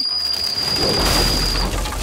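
Cartoon sound effect of a supersonic whistle: a steady shrill tone that cuts off near the end. A noisy rushing blast with a low rumble swells under it from about half a second in.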